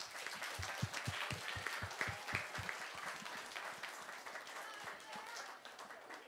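Audience applauding, a dense patter of many hands clapping that fades toward the end, with a few voices over it.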